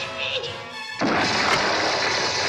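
Cartoon sound effect: a sudden, loud burst of rushing noise starts about a second in and carries on at full strength, over the show's music score.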